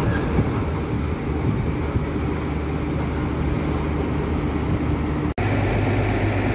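Intercity bus diesel engine running at low speed as the bus pulls away, a steady low drone. It breaks off abruptly about five seconds in, and another engine then drones steadily.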